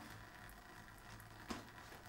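Near silence: room tone with a low steady hum and a single faint click about one and a half seconds in.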